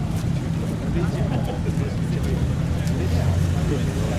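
A car engine running with a steady low drone, a little louder about three seconds in, with people's voices over it.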